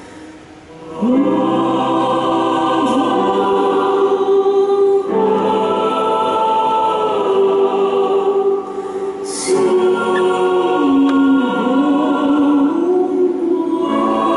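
A woman's solo voice singing slow, long-held notes that slide up into pitch, with a choir. It comes in about a second in and breaks off briefly just before nine seconds.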